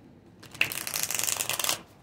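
A deck of tarot cards being shuffled by hand: a quick run of fast papery card flicks lasting just over a second, starting about half a second in and stopping shortly before the end.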